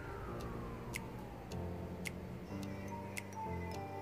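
Background music: sustained electronic chords changing every second or so, with sharp ticking percussion and a falling sweep that ends about a second and a half in.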